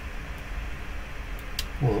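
A pause in speech with only a steady low background hum and a couple of faint clicks.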